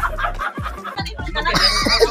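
Music from a short vlog intro sting, with a clucking, chicken-like sound over it.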